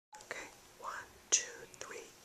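Quiet whispering: a few short, breathy whispered words, the loudest a little past the middle.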